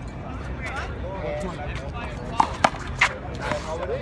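Background voices chattering, broken a little past halfway by three quick sharp smacks, a small rubber handball striking a hard surface.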